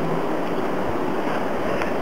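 Steady background hiss of outdoor ambience, even throughout, with no distinct sound standing out.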